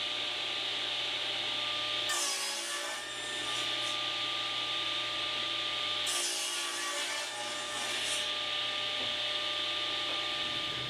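Table saw running and crosscutting a 1½-inch-thick pine glue-up on a crosscut sled. The steady motor and blade sound changes twice, for about two seconds each time, as the blade cuts through the wood, about two seconds in and again about six seconds in.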